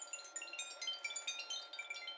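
Wind chimes ringing in a dense, quick run of high, short tinkling notes that starts suddenly, as part of a background music track.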